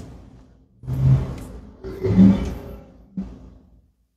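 A man's low, indistinct vocal sounds, three short throaty ones about a second apart, not clear words.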